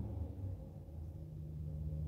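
2014 Ram 1500's 5.7-liter Hemi V8 running just after a cold start, its revs settling from the start-up flare down toward idle, heard from inside the cab as a steady low hum.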